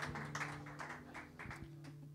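Scattered applause from a small audience dying away after a song: a handful of claps, fewer and fainter towards the end.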